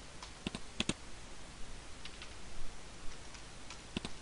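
A few scattered clicks of a computer keyboard and mouse, including a quick pair about a second in, as a spreadsheet cell is opened for typing.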